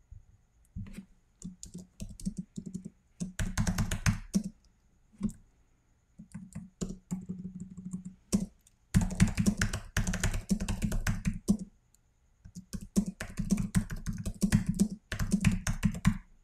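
Typing on a computer keyboard: runs of quick keystrokes broken by short pauses, the densest runs about three seconds in, from about nine to eleven seconds, and from about thirteen seconds on.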